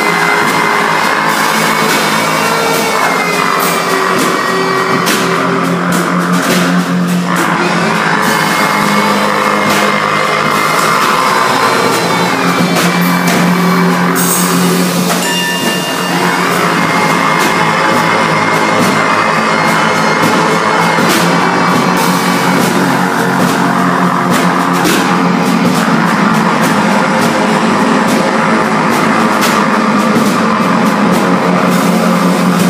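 Loud live band music: a trumpet plays long held notes over a drum kit in a dense, continuous sound.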